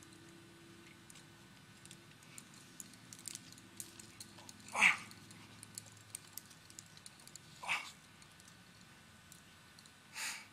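A rock climber's two hard, short breaths out while climbing: a loud one about five seconds in and a softer one near eight seconds, over faint scattered clicks.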